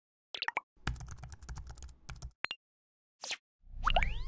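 Logo-animation sound effects: a couple of quick pops, then a rapid run of clicks like typing lasting about a second and a half, a brief swish, and a rising glide near the end.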